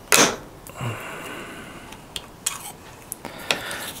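Roper & Whitney XX hand punch driving a homemade 6 mm punch through thin sheet metal: a sharp crack as the punch breaks through, the loudest sound, just after the start. Then comes a ringing, scraping sound as the sheet is stripped off the punch, followed by a few small metallic clicks.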